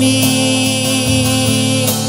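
Live soft-rock band music, with a man's voice holding one sung note over the band.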